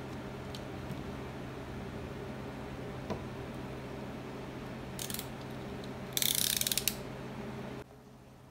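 Utility knife working on grit-coated barley dough rounds, with a short burst of clicking about five seconds in and a louder run of rapid ratchet-like clicking about six seconds in, over a steady low hum. The hum cuts off just before the end.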